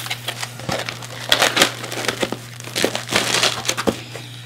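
Foam packing insert being handled and pushed down into a cardboard shipping box: irregular rustling, rubbing and sharp crinkling clicks, over a steady low hum.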